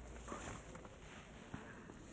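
Faint, distant shouting voices over a steady hiss of open-air noise, with one short sharp knock about one and a half seconds in.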